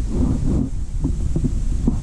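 Strong wind buffeting the camera microphone as a heavy, uneven low rumble, with a brief knock just before the end.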